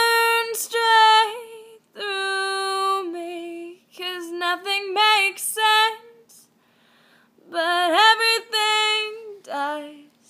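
A woman singing a slow melody unaccompanied, in long held notes with pitch bends and short breaks between phrases, pausing for about a second just past the middle.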